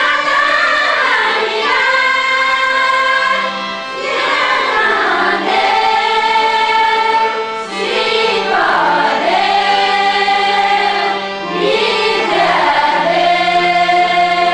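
A group of women singing a song together, holding long notes in phrases a few seconds long, with brief gliding breaks between phrases.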